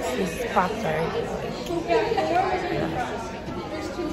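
Indistinct talking and chatter, with no clear words.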